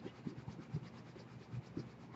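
A quiet room with faint, scattered small clicks and scratchy rustles.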